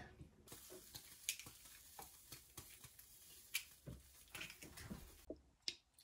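Near silence: a faint hiss with scattered soft ticks and taps, the hiss cutting off abruptly near the end.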